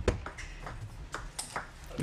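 Table tennis ball rally: the celluloid-type ball clicking sharply off the rackets and the table in a quick irregular string of hits, the loudest right at the start.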